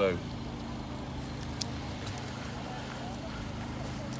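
An engine idling with a steady, even low hum.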